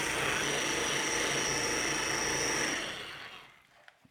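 An electric orbital polisher runs steadily with a high whine, its foam pad working scratch-removal compound into car paint. It winds down and stops a little after three seconds in.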